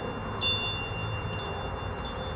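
High chime tones ringing, two pitches held steady, struck afresh about half a second in.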